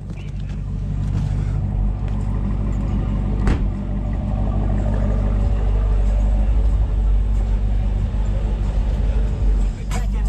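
Car engine idling steadily, with a single car door shutting about three and a half seconds in.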